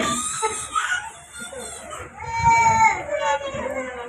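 A baby crying: two long high-pitched wails of about a second each, one right at the start and another about two seconds in.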